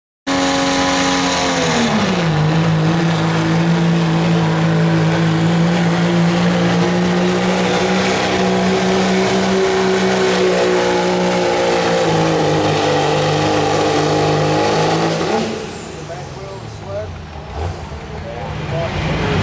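Diesel pickup truck engine running flat out under load as it pulls a weight sled. Its pitch drops over the first two seconds, holds high and steady, and the engine note cuts off suddenly about fifteen seconds in.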